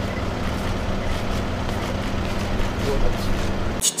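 City street noise: a steady rumble of road traffic with a low, even engine hum, cutting off suddenly just before the end.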